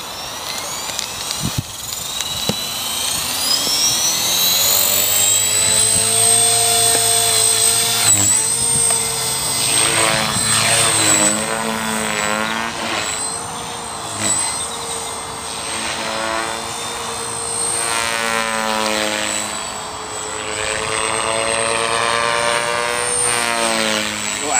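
Align T-Rex 450 Pro electric RC helicopter spooling up, its motor whine climbing steeply in pitch over the first few seconds, then flying with a steady high whine and rotor buzz that repeatedly rises and falls in pitch as it manoeuvres.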